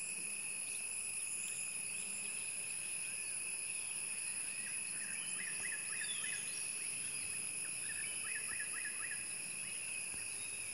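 Steady, shrill chorus of forest insects. A bird gives two short runs of quick chirps over it in the second half.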